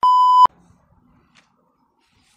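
A single steady electronic beep, about half a second long, cutting off sharply. It is an edit tone laid over a black frame between scenes.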